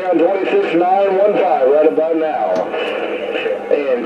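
A man's voice received over the speaker of an RCI 2970 DX 10/11-meter radio on AM skip, sounding thin and narrow-band.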